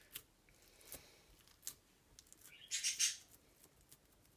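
Faint handling sounds of hands pressing and patting soft seitan dough flat on a baking sheet. There are a few light taps and a brief louder rubbing noise about three seconds in.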